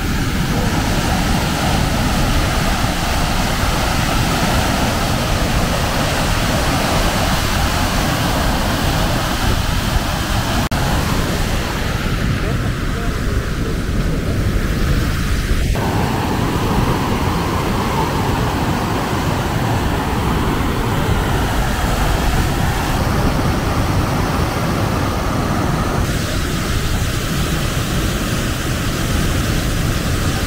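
Steady rush of a large waterfall falling into the sea, mixed with wind on the microphone. The noise changes in tone abruptly a few times.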